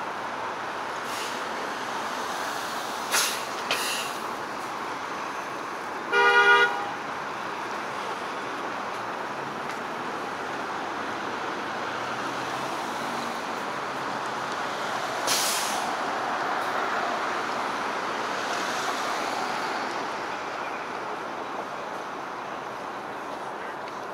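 Steady city street traffic with one short car-horn honk about six seconds in, the loudest sound. A few brief sharp noises stand out, and a vehicle passes in a swell of traffic sound later on.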